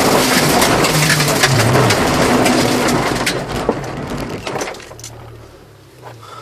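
Four-cylinder Honda Civic 1.5 rally car slowing down on a loose gravel road: tyres crunching over gravel, with small stones clicking against the car, while the engine note drops. The sound fades over the last couple of seconds to a low engine drone as the car rolls to a crawl.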